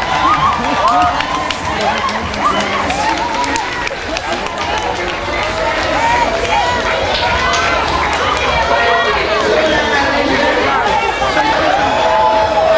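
A small crowd talking, calling out and cheering over one another, many voices at once, with a brief laugh near the start.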